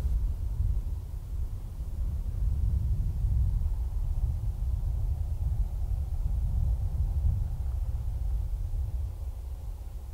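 Wind buffeting an outdoor microphone: a steady, gusting low rumble that eases slightly near the end.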